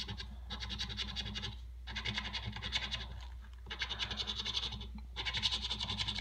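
Scratch-off lottery ticket being scratched with a round coin-style scratcher, rapid back-and-forth strokes rubbing off the latex coating. The scratching comes in four runs with short pauses between them.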